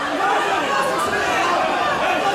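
Crowd of spectators in a hall chattering and calling out, many voices overlapping at a steady level.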